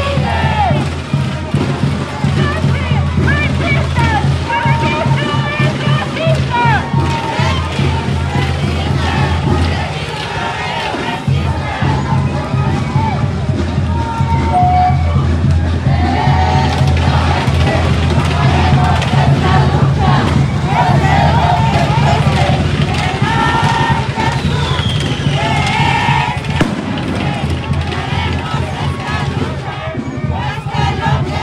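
Voices of a marching crowd in the street mixed with music, over a steady low drone that drops out briefly about ten seconds in.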